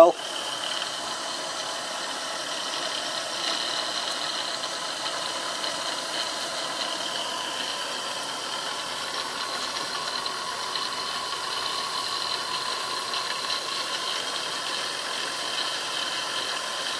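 Small 1930s steam turbine spinning fast on steam at about 35 psi, running well: a steady high-pitched whine over the hiss of the steam.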